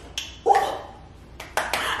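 A short wordless vocal sound from a woman, then a quick cluster of sharp clicks or snaps near the end.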